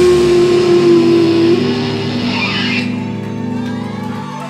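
A live rock band's final chord on electric guitars ringing out: one held guitar note stops about a second and a half in, the high end cuts off near three seconds, and the low chord fades away.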